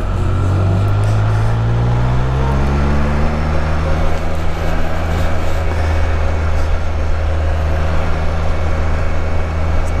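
Can-Am Spyder F3 Limited's inline three-cylinder engine pulling as the trike speeds up, its pitch rising over the first few seconds, then running steadily at cruising speed.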